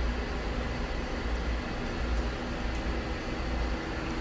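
Greenhouse cooling fan running steadily: a low hum under an even rush of air.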